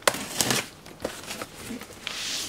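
Cardboard shipping box being torn open by hand: packing tape and cardboard flaps ripped and pulled back. There are a few sharp rips and crackles, the loudest at the very start, with rustling between them.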